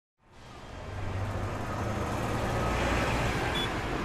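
City traffic ambience fading in: a steady wash of road traffic noise with a low rumble.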